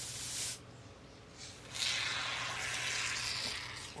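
Aerosol can of expanding injection foam spraying through its nozzle tube: a short hiss at the start, then a longer hiss of about two seconds.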